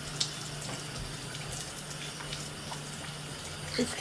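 Steady background hiss with a low hum beneath it, and a faint click shortly after the start.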